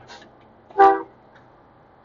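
One short toot of a Peterbilt 389's train horn, about a quarter second long, just under a second in.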